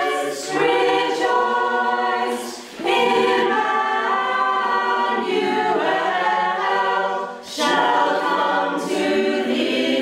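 Mixed-voice community choir singing in sustained phrases, with brief breaks between phrases about half a second, two and a half and seven and a half seconds in.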